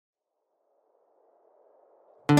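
Near silence: only a very faint hiss.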